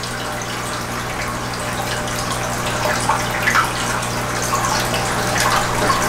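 Aquarium water running and trickling steadily over a constant low electrical hum from the tank equipment, with a few small splashes and knocks as a fish net works in the tank.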